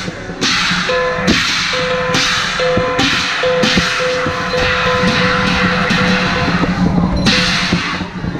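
Chinese drum and cymbals playing the percussion accompaniment to a qilin dance: drum strokes under long washes of cymbal crashes, with a ringing tone sounding on and off through the middle.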